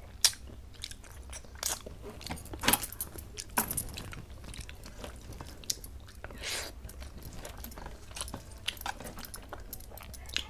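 Close-miked eating by hand: wet chewing and mouth clicks as rice and fish head curry are chewed, with irregular sharp smacks and a few longer smeary sounds, over a steady low hum.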